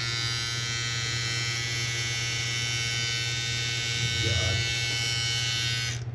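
Small electric hair trimmer switched on and buzzing steadily as it shaves the hair off a finger knuckle.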